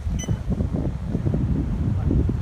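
Wind buffeting the microphone: an uneven low rumble. A brief high chirp sounds about a quarter of a second in.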